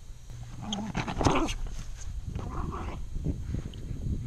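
West Highland White Terrier vocalizing while playing with a ball: one burst about a second in, the loudest sound here, and another about halfway through.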